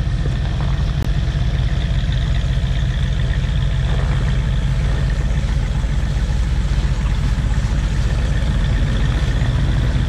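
Tracked Bombardier snow coaches idling, a steady, loud low engine rumble.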